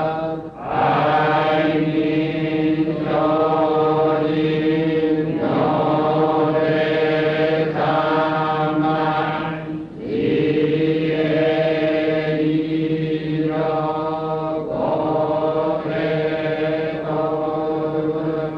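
A Japanese Pure Land Buddhist congregation chanting a sutra together in unison, in long held, steady notes. The chant breaks briefly for breath about half a second in and again about ten seconds in.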